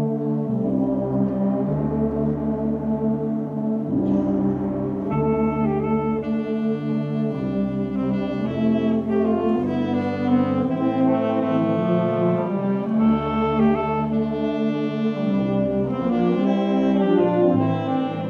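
A wind band playing slow, sustained brass chords, the sound filling out with higher parts from about five seconds in.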